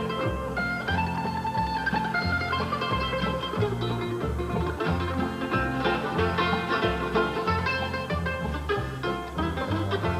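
Bluegrass band playing an instrumental break, with a mandolin picking the lead over banjo, guitar and a steady alternating bass line.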